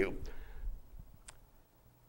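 A man's word trails off into a pause, with a single faint click about a second in, then near silence.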